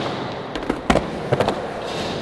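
Skateboards on a concrete skatepark floor: wheels rolling with a steady hiss, and about four sharp clacks of boards hitting the ground, the loudest about a second in.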